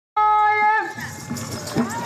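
A man's voice holding one long high sung note, steady in pitch, that bends down and breaks off just under a second in; a rougher, broken stretch of voice follows.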